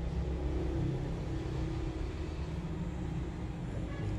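Steady low rumble of a motor vehicle running, with a faint hum over it.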